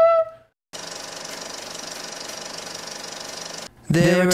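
A held flute note fades out. After a short gap, a steady, fast rattling mechanical buzz runs for about three seconds and then stops abruptly.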